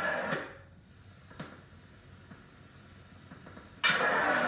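A break in the recording: the stage sound cuts off soon after the start, leaving faint hiss with two sharp clicks, and loud sound comes back suddenly near the end.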